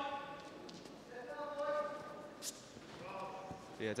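A raised voice calling out twice with long, held calls, followed by a short click, before a man's speech begins near the end.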